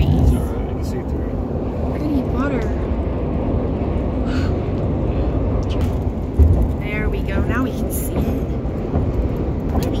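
Steady road and engine rumble of a car driving at highway speed, heard from inside the cabin, with a few brief faint voice-like sounds over it.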